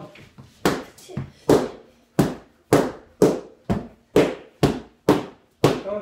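Sticks striking hand-held training pads in a steady series of sharp smacks, about two a second, each with a short ring in the room.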